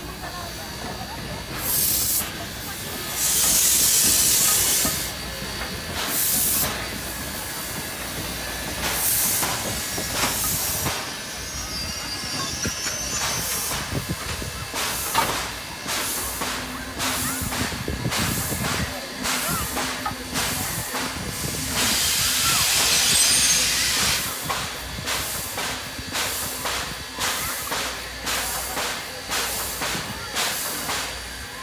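Steam locomotive letting off steam: a steady hiss with two loud, longer bursts of steam about three seconds in and again about twenty-two seconds in, and short knocks and clanks throughout.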